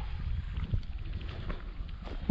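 Wind buffeting the microphone: a low, steady rumble with no speech over it.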